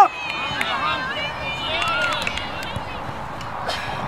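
Distant shouts and calls from sideline spectators and players at a youth soccer game, over steady outdoor background noise.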